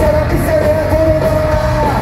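Punk rock band playing live with electric guitars, bass and drums, and a long held sung note over the top, recorded loud from within the crowd.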